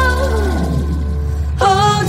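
Ballad music: a woman's long sung note slides down and fades over a steady low accompaniment. A new sung phrase with vibrato begins about one and a half seconds in.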